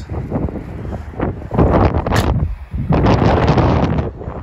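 Wind blowing across the microphone in loud, uneven gusts, with a brief lull about two and a half seconds in.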